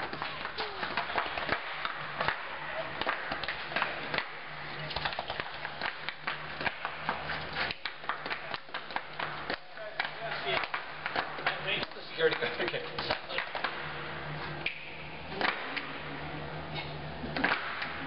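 Rapid, irregular hand claps and body slaps with shuffling footwork from two people dancing in a concrete parking garage, each slap coming back as a slap-back echo off the concrete, over a low steady hum.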